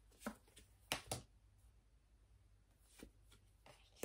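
Tarot cards being handled: four short, faint card taps, two close together about a second in and one near the three-second mark, with near silence between.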